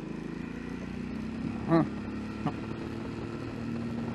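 Suzuki V-Strom 650's V-twin engine running steadily on the move, heard from on the bike.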